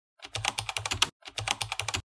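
Two quick runs of rapid clicking, about ten clicks a second, each just under a second long, with a short break between them.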